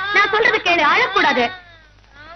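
A woman crying aloud, her voice rising and falling in long sobbing wails that break off about one and a half seconds in.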